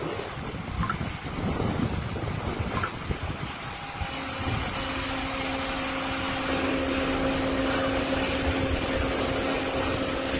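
Wind buffeting the phone's microphone in gusts. About four seconds in, a steady low hum with a couple of overtones sets in and holds.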